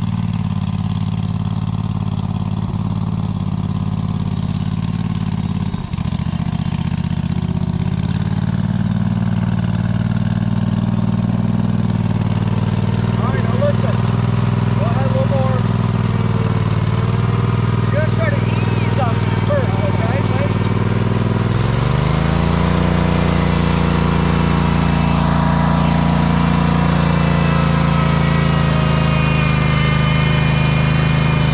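Small engine of an off-road garden tractor running steadily. About two-thirds of the way in it rises in pitch and holds the higher speed as the tractor begins to climb a steep rock slab.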